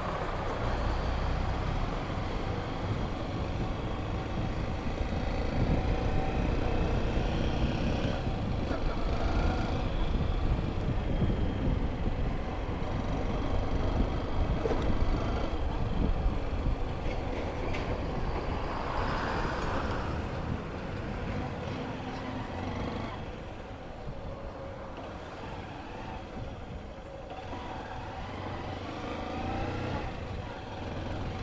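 Honda CG 160 Fan motorcycle being ridden at low speed: its single-cylinder engine running under steady road and wind rumble, a little quieter from about twenty-three seconds in.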